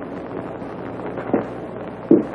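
Steady hiss and background noise of an old film soundtrack, with a faint short knock about one and a half seconds in.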